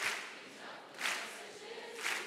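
Congregation clapping together in a slow, steady beat, about one clap a second, in a reverberant hall.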